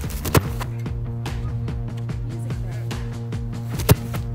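Background music with a steady beat, over which come two sharp thuds, one about a third of a second in and one near the end: a football struck by a place-kicker's foot on field-goal attempts.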